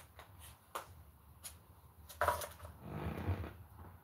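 Quiet handling noises: a few faint clicks as a small container is handled, then a short breathy sound about two seconds in.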